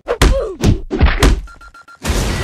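Sound-effect thuds for an animated logo intro: a quick run of hard hits, each dropping in pitch, about five in the first second and a half, then a short high beep near the end.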